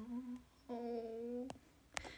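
A young woman's closed-mouth hum, two held "mm" sounds on one steady pitch, the second lasting nearly a second. A sharp click comes as it ends, and another near the end.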